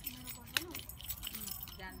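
Thin plastic water bottle crackling and clicking as a child squeezes it and drinks from it, with one sharp click about half a second in.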